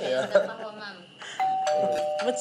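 Two-tone doorbell chime, a higher note followed by a lower one, starting about one and a half seconds in and ringing on.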